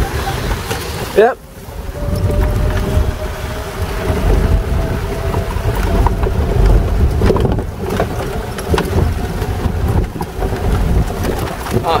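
Wind buffeting the microphone on an open golf cart driving through rain, with a faint steady motor whine that rises slightly in pitch over the first few seconds.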